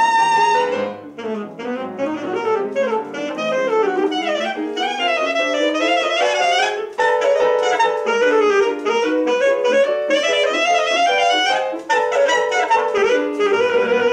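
Saxophone with piano accompaniment: a long held high note ends just under a second in, then the saxophone plays fast runs of notes that rise and fall over the piano.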